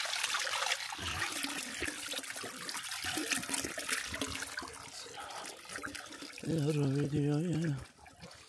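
Spring water pouring from a metal pipe spout into a stone fountain trough, a steady splashing that fades about halfway through as the microphone moves along the wall. Near the end a person's voice holds one steady tone for over a second.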